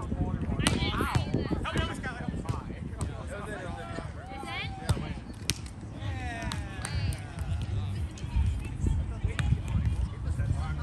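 Chatter of many voices from players around the grass volleyball courts, with a low wind rumble on the microphone and a few sharp knocks, the loudest about five seconds in.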